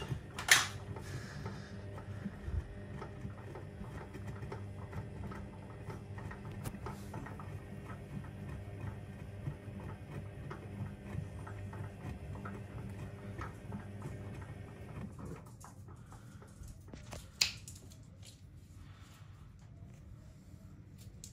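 AEG Öko Lavamat 6955 Sensorlogic front-loading washing machine in its hot main wash with the heater off, the drum motor humming steadily as the drum turns the wet laundry, with light ticking; about 15 seconds in the drum stops and it goes quieter. Two sharp clicks stand out, one about half a second in and one about 17 seconds in.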